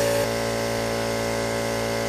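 Electric air compressor running with a steady hum, under the hiss of compressed air through a spray paint gun.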